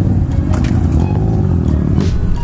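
Motorcycle engines idling together at a stop, a steady low rumble.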